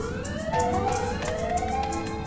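Alarm siren sounding in rising wails, a new sweep about once a second, over background music with a steady drone and fast ticking. It goes with an emergency warning to switch off the energy supply.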